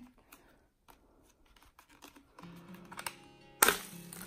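Faint light clicks, then one sharp plastic snap near the end: a Shark cordless handheld vacuum's dust bin being released over a trash can at the push of its button.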